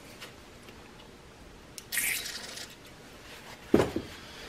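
Handling at a bench vise: a brief rustle of a paper shop towel being rubbed over a freshly tapped steel railroad-spike hook, then a short sharp knock near the end.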